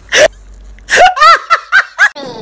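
A high-pitched voice gives a short hiccup-like gasp, then a quick run of squeaky giggles.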